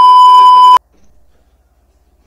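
Television colour-bars test-tone beep, used as a transition effect: one loud, steady, high beep under a second long that cuts off suddenly.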